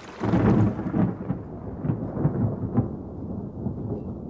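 A peal of thunder: a loud rumble breaks out a moment in and rolls on with crackles, its higher part dying away so that only the deep rumble is left.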